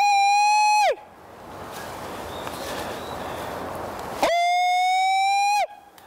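Two long, high-pitched falsetto yells, each held on one steady pitch for about a second, sliding up at the start and dropping at the end. The second comes about four seconds in. They are the call used to summon the Japanese macaques down from the mountain.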